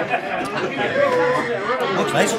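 Several people chatting at once, voices overlapping in a busy room.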